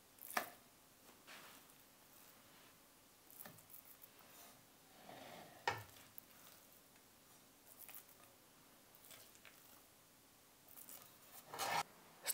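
Faint, sparse sounds of a spoon scooping thick semolina halva out of a pot and dropping it into a ring mould: soft scrapes and squelches with a few light clicks of the spoon against the pot.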